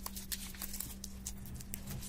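Crinkling of the wrapper as a stick of M-seal epoxy putty is unwrapped by hand: a quick, irregular run of small crackles and ticks.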